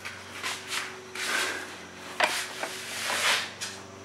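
Handling noise: several short rubbing and scraping sounds, with one sharper knock about two seconds in, over a faint steady hum.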